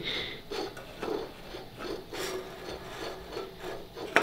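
Aluminium drink cans scraping and juddering across a tabletop as fishing line drags them, a string of short irregular rasping scrapes. The cans are moving in fits and starts rather than sliding smoothly.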